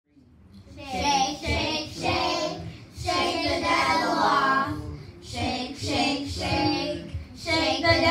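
A youth choir of young girls singing into handheld microphones, in sung phrases separated by short pauses.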